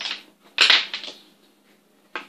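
Handling noise: two short rustling bursts, the second and louder one about half a second in, as the camera and plastic loom are moved.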